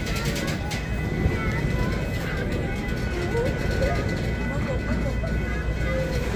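Freight train cars rolling past close by: a steady low rumble, with voices of people nearby faintly over it.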